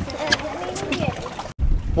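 Indistinct talking on an open boat that stops dead with an edit cut about a second and a half in, followed by a louder low rumble of wind buffeting the microphone.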